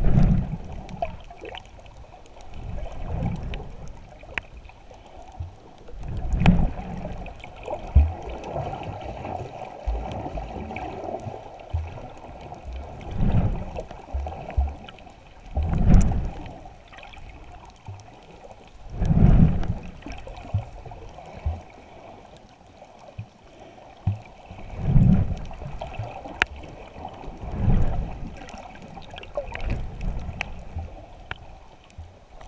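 Muffled underwater sound from a camera held by a swimming snorkeler: water surging past it in low swells every few seconds over a steady hum.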